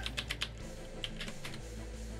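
Computer keyboard keys clicking as a six-character password is typed: a quick run of keystrokes at the start, then a few more about a second in.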